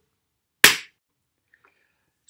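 A single sharp hand clap about half a second in.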